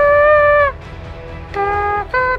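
A bugle-call-like tune blown by mouth with the hand at the lips. A long held high note bends down and stops, and after a short pause lower notes step upward again, like the start of a military bugle call.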